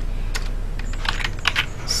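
Computer keyboard keys clicking a handful of times, most of them in a cluster about a second in, over a steady low electrical hum.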